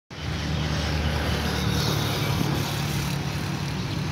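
Diesel railcar engine running, heard from a distance as a steady low hum under a broad rushing noise as the THN-class railcar train approaches.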